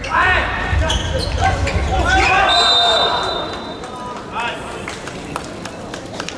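Indoor volleyball play: ball strikes and shouting voices echo in a large hall, with a short, shrill whistle blast about two and a half seconds in.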